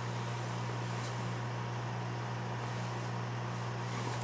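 Steady low hum with faint even background noise, unchanging throughout; no separate drinking or glass sounds stand out.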